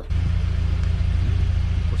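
Steady low rumble of wind buffeting the microphone, starting abruptly at a cut.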